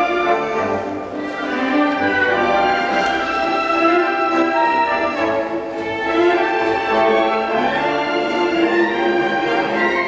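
Orchestral film score with long held notes, played over a theatre's sound system.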